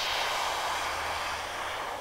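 HVLP gravity-fed cup gun spraying concrete stain: a steady hiss of air and spray, easing off near the end.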